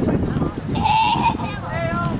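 High-pitched children's and bystanders' voices calling out, with one drawn-out high shout about a second in that lasts about half a second.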